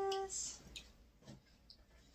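A woman's drawn-out word trails off, followed by a few faint, scattered clicks as a small candy container is handled.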